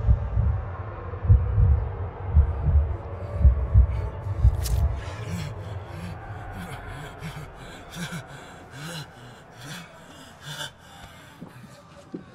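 Film sound design: a slow heartbeat, deep thumps in pairs about once a second, for the first four to five seconds. It then stops, and a run of short, sharp gasping breaths follows over faint music.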